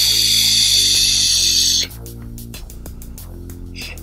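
Lotus LE80 box mod firing its atomizer coil during a long draw: a loud hiss of vapour sizzling and air pulled through the tank that cuts off suddenly about two seconds in as the fire button is released. Background music plays under it throughout.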